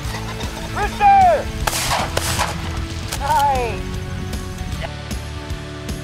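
Two shotgun shots about half a second apart, a little under two seconds in, during a pheasant flush. A loud falling cry comes just before the shots and another about a second after them.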